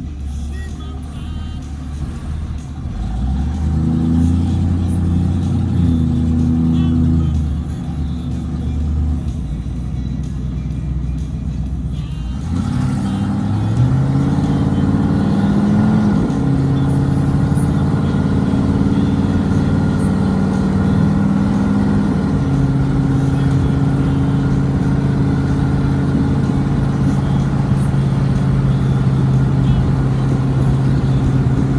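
1976 Ford Bronco engine heard from inside the cab while driving. Its pitch climbs as the truck accelerates and drops back at each gear change, twice, then holds steady at cruise for the last several seconds.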